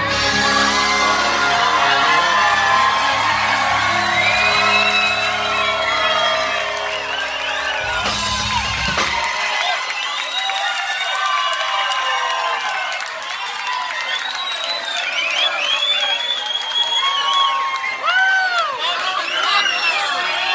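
A live band with electric guitars, bass and drums holds a final chord that ends with a hit about nine seconds in. A packed bar crowd then cheers and whoops.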